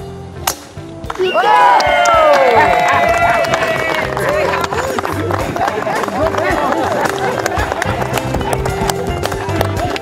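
A golf club strikes the ball off the tee with one sharp crack about half a second in. A crowd then cheers and whoops, settling into sustained applause.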